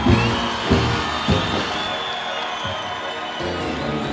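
Live samba band playing the opening of a song, with the audience cheering. The bass hits drop away for about a second past the middle, then come back.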